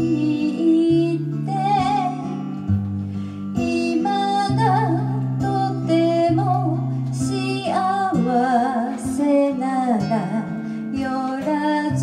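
A woman singing a slow ballad with vibrato to an acoustic guitar accompaniment.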